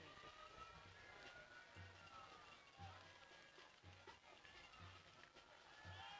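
Near silence: faint stadium ambience with a soft low beat about once a second.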